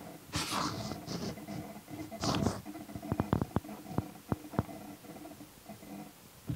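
Teknic ClearPath DC servo motor under load, holding its position against a hand pushing the ball-screw carriage: a faint steady hum with creaking, grinding bursts and a run of sharp clicks in the second half, the sound of the servo actively fighting the push.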